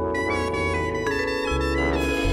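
Live jazz quintet playing: trombone and soprano saxophone holding sustained lines over vibraphone, upright bass and drums.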